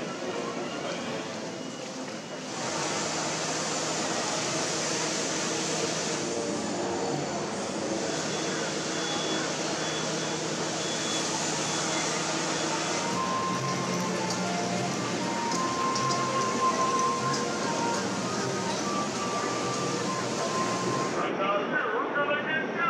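Outdoor ambience: a steady rushing noise like wind on the microphone, with faint voices and background music; from about halfway through, a few faint held notes of a melody come through.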